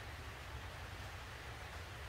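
Faint steady hiss with a low hum underneath: background room tone, with no distinct sound event.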